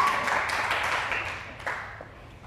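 Scattered hand clapping and laughter in a large room, dying away over about two seconds.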